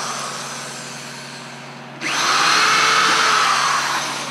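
Electric drill pre-drilling a screw hole through a wooden handle cleat into a hive box. The motor fades for the first two seconds, then is triggered hard again about two seconds in and runs loud and steady while it bores into the wood.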